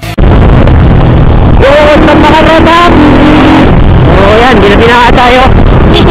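Keeway Cafe Racer 152 motorcycle, a 150 cc single, riding on the road as heard on the rider's camera: a loud, steady rush of engine and road noise that starts suddenly just after the start.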